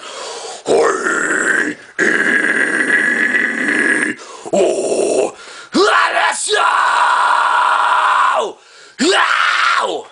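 A man's harsh screamed and growled metal-style vocals, about five drawn-out screams with short breaths between, in imitation of the band's screaming.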